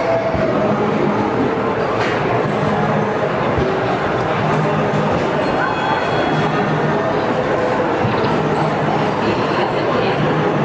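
Loud, steady arcade din: a dense mix of game machine sounds, music and voices, with faint held electronic tones through it.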